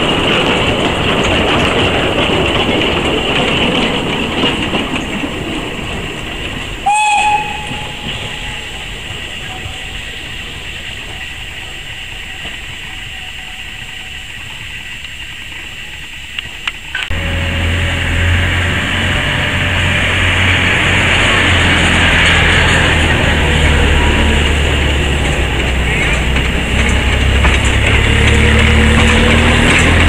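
Narrow-gauge train running on the rails, with one short whistle blast about seven seconds in. After an abrupt change about halfway through, a louder, steady low rumble builds as a small steam locomotive hauling passenger coaches draws near.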